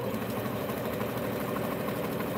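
Domestic electric sewing machine running at a steady, fast speed, stitching a seam through layered quilting cotton.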